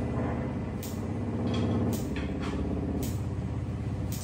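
Free-improvised music: a low, buzzing, motor-like drone from mechanized instruments, with sharp clicks or taps about once a second.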